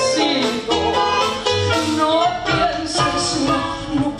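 A woman singing a live melody into a microphone, backed by a small acoustic band of nylon-string guitar, clarinet and double bass.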